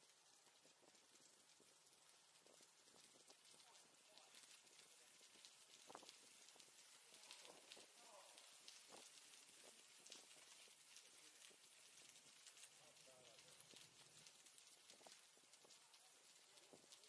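Near silence: faint bicycle riding noise with many light clicks and rattles, and faint voices about halfway through and again near the end.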